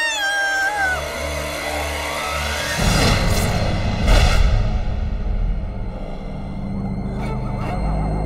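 A woman's scream trailing off with falling pitch in the first second, then a suspenseful film score: a low drone that swells with a rising whoosh into two heavy hits about three and four seconds in.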